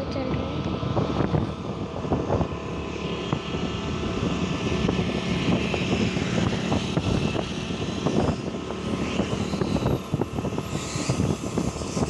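A vehicle's engine running steadily on the move, a steady hum over a rough, fluttering rumble.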